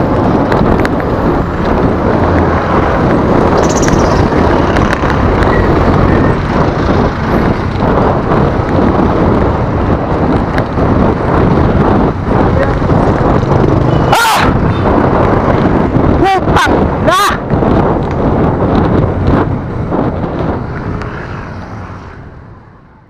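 Heavy, continuous wind buffeting on a bicycle-mounted camera's microphone during a ride in traffic, mixed with passing motor vehicle noise. Around two-thirds of the way through come a few brief pitched sounds that bend up and down.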